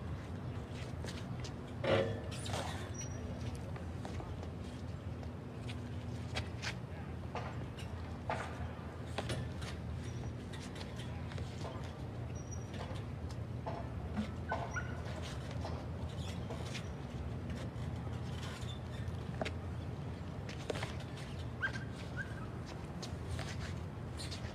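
Outdoor background noise: a steady low hum with scattered faint clicks and one sharper knock about two seconds in.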